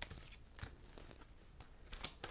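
Faint handling of tarot cards: a few soft clicks and slides as a card is laid down on the table and the deck is worked in the hands.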